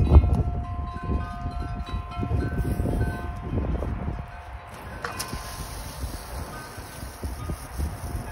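Wind chimes ringing at several fixed pitches in gusty wind, with wind rumbling on the microphone. About five seconds in, a steady hiss starts: a garden hose spraying water.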